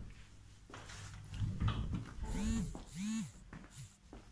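Three squeaky creaks, each rising then falling in pitch: the first two about half a second long, the last shorter.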